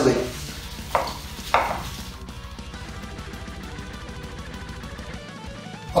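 Kitchen knife chopping fresh parsley on a wooden cutting board: two clear chops about a second in, then quieter cutting under soft background guitar music.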